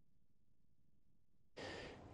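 Near silence, then about one and a half seconds in a faint hiss as the newsreader's studio microphone comes in, his intake of breath just before he speaks.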